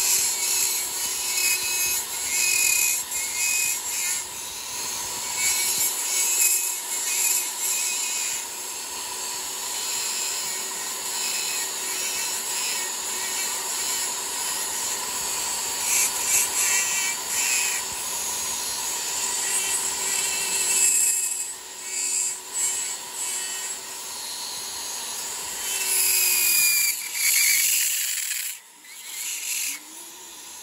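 High-speed rotary tool with a small grinding bit shaping walrus ivory: a steady motor whine under a rasping grind that swells and fades as the bit is pressed into the ivory and eased off. The grinding lets up briefly near the end.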